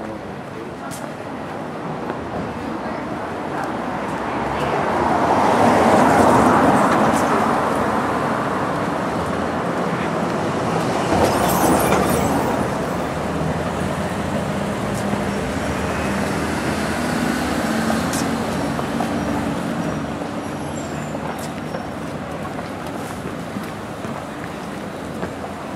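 Street traffic: cars driving past on a narrow street, over a steady traffic rumble. The loudest passing vehicle swells up and fades about six seconds in, and another passes near twelve seconds.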